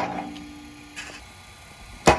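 Sports Attack pitching machine's spinning throwing wheels humming just after firing a ball. A sharp crack fades at the start, and a steady buzzing tone stops about a second in, with a faint knock at about the same moment.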